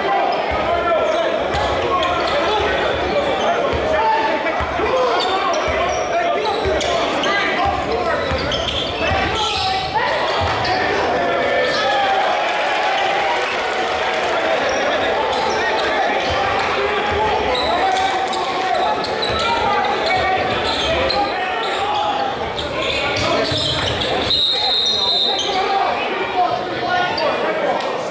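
Crowd noise at a live basketball game: many spectators talking and calling out at once, with a basketball dribbling and bouncing on the hardwood court, echoing in a large gymnasium. A brief high tone sounds near the end.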